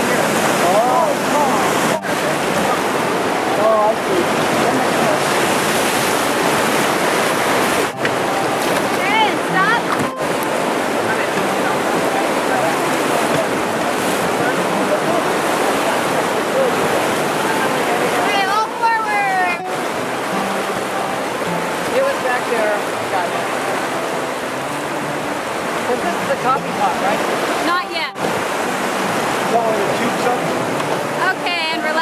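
Whitewater rapid rushing loudly around a raft in a narrow rock canyon, heard from aboard the raft. People on board shout a few times, the longest a little past the middle, and the rush drops out briefly several times.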